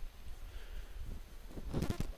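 Footsteps on a dirt woodland path, under a steady low rumble on the microphone, with a short cluster of louder crunching steps near the end.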